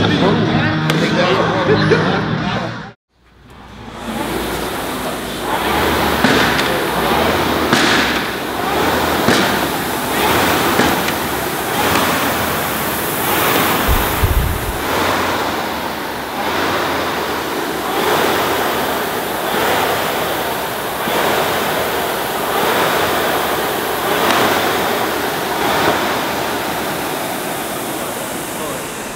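Concept2 air rowing machine's fan flywheel whooshing under hard sprint strokes, the rush swelling with each pull about every second and a half. It is preceded by a few seconds of guitar music that cuts out suddenly.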